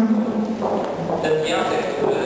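Speech: a man talking to the room, unamplified.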